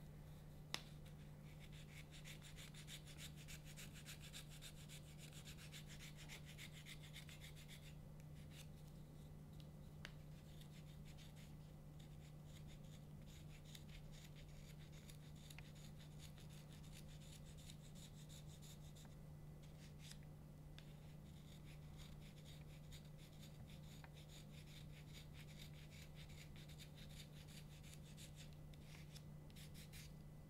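Faint, quick, repeated strokes of a reed knife scraping cane, with a short pause partway through. The scraping thins the cane to profile a double reed for a krummhorn.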